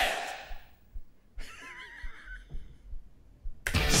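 A one-second snippet of a hard rock song, a shouted "Swing it!", fades out early on. About a second and a half in there is a brief snicker, and the same snippet starts again near the end.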